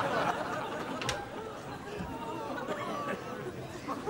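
Low murmur of studio audience chatter settling after laughter, with a single sharp click about a second in.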